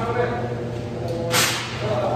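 A single short, sharp swish about a second and a half in, over a steady low hum and faint voices.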